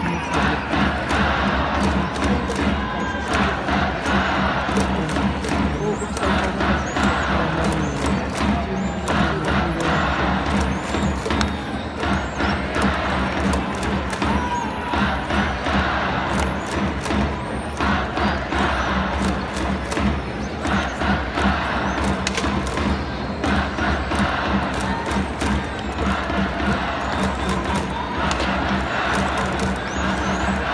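Japanese baseball cheering section performing for the batter: band music with fans chanting and clapping along in a fast, steady rhythm, continuous and loud.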